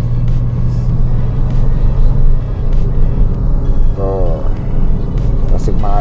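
Steady low rumble of a car's engine and tyres heard from inside the cabin while driving, with background music under it. A brief voice sound rises and falls about four seconds in.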